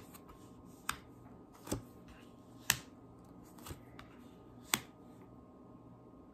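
Five short, sharp snaps about a second apart over quiet room tone: tarot cards being drawn and laid down one by one.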